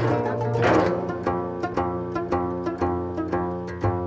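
Geomungo, the Korean six-string fretted zither, struck with a bamboo stick in a string of evenly paced plucked notes, about three a second, over sustained low tones from the accompanying orchestra.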